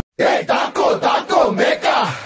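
A chorus of male voices chanting in short, fast, rhythmic shouts, about four a second, in a film-song recording. The instrumental music has cut off just before.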